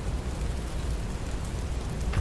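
Fire burning: a steady rushing, noisy sound with a low rumble, from flames spelling out letters on the ground.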